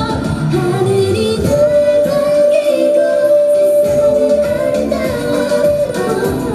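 K-pop girl-group song with female singing over the backing track, played loud. A long sung note is held from about a second and a half in until near the end.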